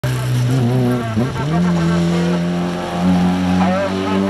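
Peugeot 205 hill-climb car's four-cylinder engine at full throttle as it passes: the note dips briefly about a second in, climbs to a steady higher pitch, then steps up again around three seconds in.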